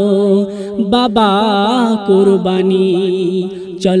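A male voice sings a Bengali Islamic gojol, drawing out a long, ornamented melismatic passage over a steady low drone. The voice dips briefly near the end, then the next sung phrase begins.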